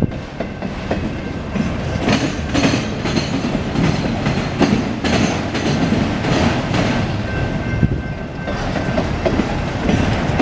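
Autorack freight cars of a CSX train rolling steadily past, a constant low rumble with irregular clicks and knocks from the steel wheels running over rail joints.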